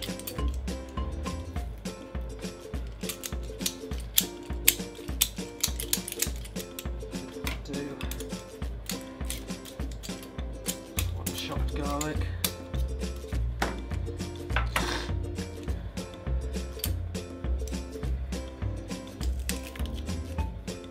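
Background music with a steady bass beat, over the clicks and metal squeaks of a stainless-steel garlic press being squeezed on garlic cloves.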